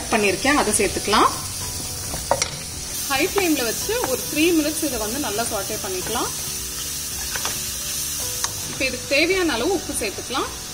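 Button mushrooms sizzling as they fry in a hot non-stick pan, stirred and scraped with a wooden spatula. A voice comes and goes over the steady sizzle.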